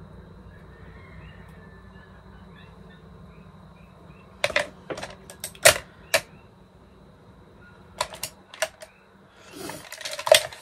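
Makeup compacts and products clicking and knocking as they are handled and set down on a table: a quick run of sharp clicks about halfway through and a few more near the end, over a faint steady hum.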